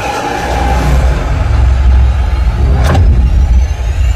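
Action-film background score with a heavy low rumble, a sharp hit about three seconds in, and a faint rising high tone near the end.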